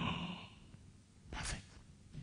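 A man sighing: a breathy exhale that trails off in the first half second, then a short breathy puff about one and a half seconds in.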